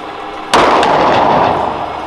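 A single 9mm Taurus pistol shot about half a second in, sharp and loud, with a long echo off the hard walls of an indoor firing range.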